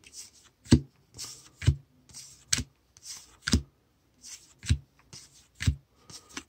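Baseball cards being flipped through by hand one at a time: a soft slide of card stock, then a sharp snap as each card is tucked behind the stack, about once a second, six times.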